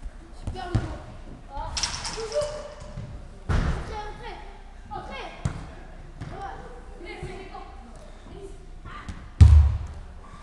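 Indoor five-a-side football game in a sports hall: players' shouts and calls over sharp thuds of a football being kicked and striking hard surfaces. A heavy, low thud near the end is the loudest sound.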